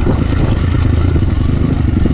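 Kawasaki KLX140G dirt bike's single-cylinder four-stroke engine running steadily at low speed, heard close up from the bike, with a rapid, even thudding pulse as it rides along a bumpy dirt trail.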